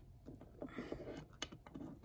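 Faint handling noise of small plastic toy figures being moved by hand on a tabletop: a few light clicks and taps.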